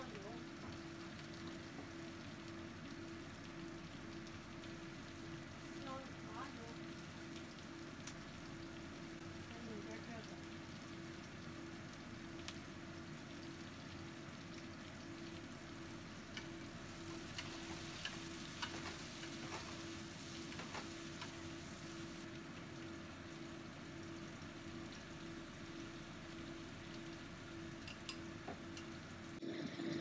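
Zucchini and bean sprouts frying in a wok: a steady sizzling hiss that gets briefly brighter and louder about two-thirds of the way through. A steady low hum runs underneath.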